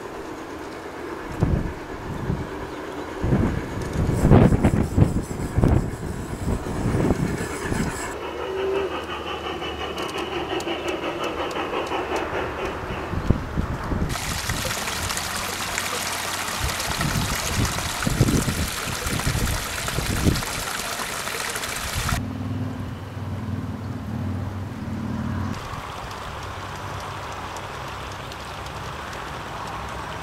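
Garden-scale model train running on its outdoor track, a low rumble with irregular knocks. About halfway through, water splashes down a small rock cascade as an even hiss for roughly eight seconds. It is followed by a steady low hum for a few seconds.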